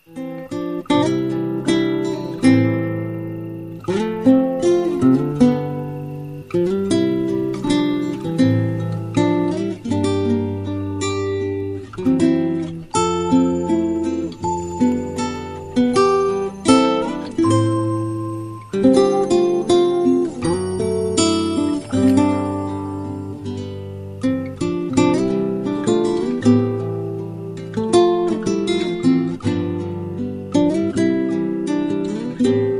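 Background music: an acoustic guitar playing a plucked melody over chords, note after note.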